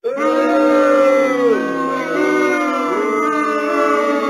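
A crowd of cartoon voices wailing together in one long cry of dismay, several voices held at once, some sagging in pitch about halfway through.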